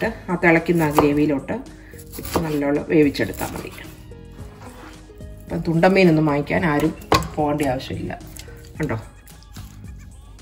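A few knife chops through raw chicken on a plastic cutting board, under a voice and background music, which are louder.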